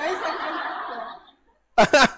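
A group of people laughing, the laughter fading out over about a second, followed by a short hush before a man's voice resumes near the end.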